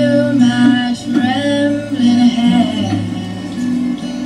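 A young woman singing, holding long notes, with an acoustic guitar accompanying her.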